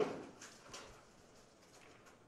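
A sharp knock with a short ringing tail, then a softer knock under a second later: the clatter of wooden candlepins and small balls in a bowling alley.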